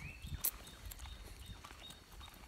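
Quiet footsteps of a person walking on a woodland path, with two sharp clicks in the first half second.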